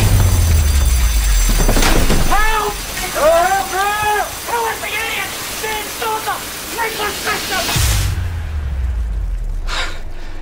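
Studio overhead sprinklers pouring heavy water spray, a dense rushing hiss with a deep rumble as it bursts on. A voice lets out long, rising-and-falling notes over it in the middle. Near the end the spray thins to a low rumble.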